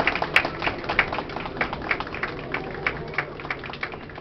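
Scattered audience applause, irregular claps that thin out and grow fainter toward the end.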